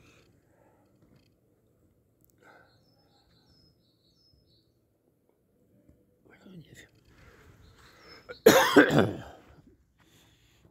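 A person coughs once, loudly, near the end, after several quiet seconds broken only by a few faint bird chirps.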